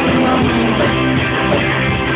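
Rock band playing live, a guitar-led instrumental passage with electric guitar on top and bass underneath, loud and continuous.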